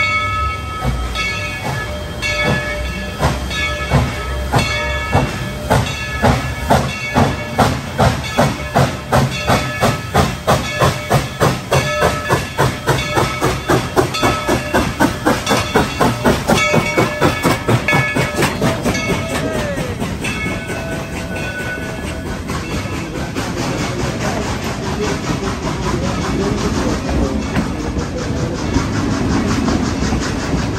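Coal-fired steam locomotive chuffing in an even rhythm as it pulls past, with steady ringing tones over the beats, then fading after about twenty seconds into the rolling rumble and clickety-clack of the passenger coaches.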